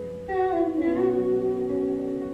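A young woman singing into a microphone over keyboard accompaniment; about a third of a second in she starts a new phrase, her voice sliding down and then holding a steady note.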